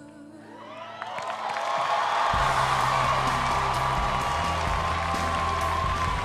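Studio audience cheering, whooping and applauding over the band's closing music. The crowd noise swells from about a second in and stays loud.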